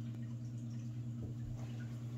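A steady low hum in a small room, with a couple of faint soft knocks in the second half.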